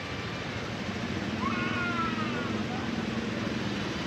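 A child crying: one long wail that rises and then falls, starting about a second and a half in, over steady street traffic noise.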